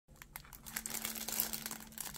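Clear plastic overwrap of a trading-card rack pack crinkling in the hand as it is handled, a run of irregular crackles.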